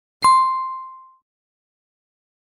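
A single notification-bell 'ding' sound effect: one clear bell tone that strikes about a quarter-second in and fades out within a second.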